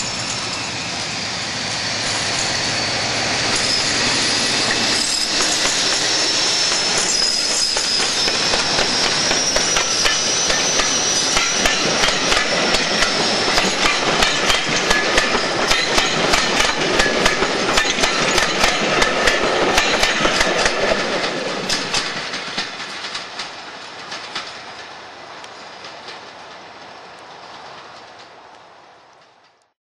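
Diesel locomotive under power hauling a passenger train past, its engine running with a high whistle that wavers in pitch. From about halfway the coach wheels click rapidly over the rail joints as they pass close by, then the train fades into the distance over the last few seconds.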